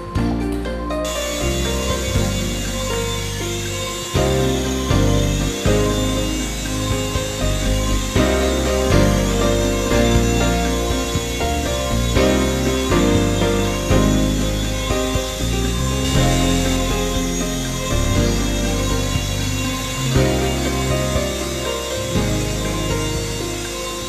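Background music with a steady beat over the buzzing whine of a small coaxial RC toy helicopter's electric rotor motors, which set in about a second in and waver in pitch as it flies.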